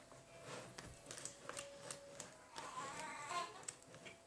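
Fork scraping and clicking against a plastic mixing bowl as thick banana batter is stirred, faint and irregular. A faint child's voice sounds in the background about two-thirds of the way through.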